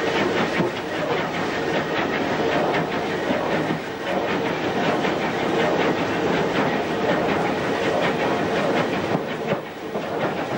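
Footplate sound of the North British Railway 0-6-0 steam locomotive No. 673 'Maude' under way: a steady loud running noise with a quick rhythmic beat, heard in the open cab. It drops briefly just before the end.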